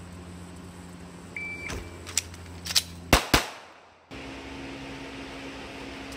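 A shot timer beeps once. A few sharp clacks follow as the pistol is picked up off the table and readied, then two pistol shots in quick succession. After that a steady low hum of a fan or air conditioner begins.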